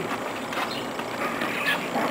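Faint, soft scuffs and taps of a dog's paws in rubber-soled dog boots stepping on a concrete path, over quiet outdoor background.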